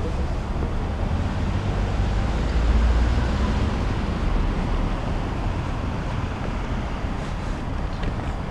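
Steady outdoor background noise: a low rumble with a hiss above it, swelling a little about three seconds in, with no distinct events.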